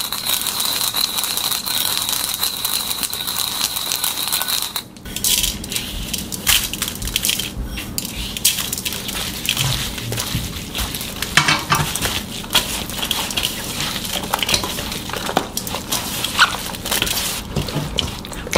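Sesame seeds being crushed with a wooden pestle in a small bowl: a steady gritty grinding for about five seconds. Then gloved hands toss and mix blanched water dropwort (minari) in a stainless steel bowl, an irregular wet rustling and crackling with many small clicks against the metal.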